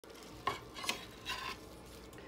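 Kale stalks being handled on a plastic cutting board: three light knocks about half a second apart, each with a brief faint ring.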